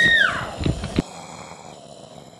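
A young woman's high-pitched scream, held briefly and then falling away, followed by a few quick knocks and thumps as she gets up from a chair.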